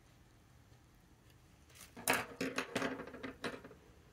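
A quick run of small clinks and knocks, as hard objects such as ink vials and a pen are handled on a tabletop. It starts about halfway through and lasts nearly two seconds.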